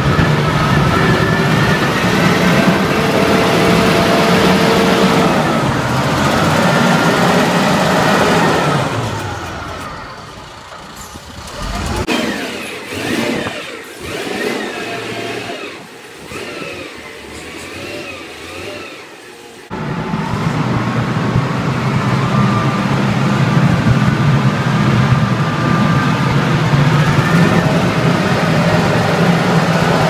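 Diesel engine of an XCMG LW300K wheel loader running under load as it pushes snow with its front bucket, loud and steady close up. From about a third of the way in it grows much fainter as the loader works farther off. About two-thirds of the way through it comes back loud all at once.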